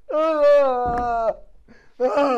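A man's long, drawn-out wail, a single held "aaah" of mock despair lasting just over a second and trailing off at the end.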